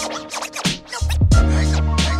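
Boom-bap hip hop beat with turntable scratching over it. The bass drops out for about the first second, then comes back in.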